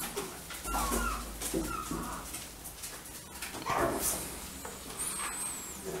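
Chihuahua puppy giving a few short, high-pitched cries while playfully mouthing and pawing at a person's hand.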